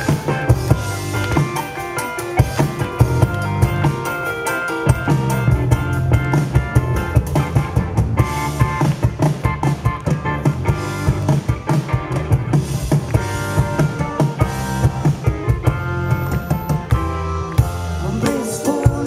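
Live rock band playing an instrumental passage with no singing: a drum kit beating steadily under electric bass, electric guitar and keyboard.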